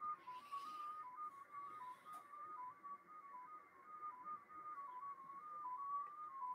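Shortwave receiver audio of the XPA2 digital signal on 13.462 MHz upper sideband: a faint single tone hopping between several close pitches a few times a second, over light receiver hiss.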